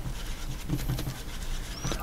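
Faint scratching and light tapping of a painting tool working paint into a mix on a paper-plate palette, over a low steady room hum.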